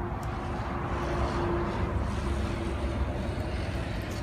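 Kick scooter's wheels rolling over car-park tarmac as the rider approaches, a steady rolling rush over a low outdoor rumble.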